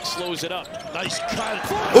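A basketball being dribbled on a hardwood arena court, heard through the game broadcast with a few sharp bounces under the commentator's voice.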